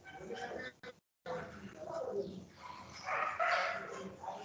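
A dog barking, carried over online-meeting audio. The sound cuts out completely for a moment about a second in.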